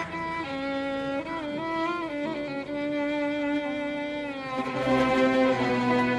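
Violin section of an Arabic orchestra playing a melody in unison, with notes that slide from one pitch to the next. About two-thirds of the way through, lower strings come in and the music gets louder.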